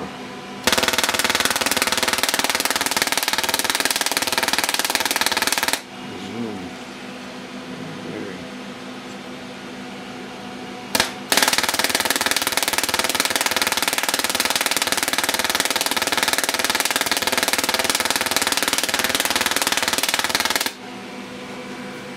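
Solid-state Tesla coil firing, its arc discharge a loud, steady buzzing crackle, driven by a MOSFET bridge run at a very short duty cycle. It runs for about five seconds from a second in, stops, gives a short burst near the middle, then runs again for about nine seconds and cuts off suddenly.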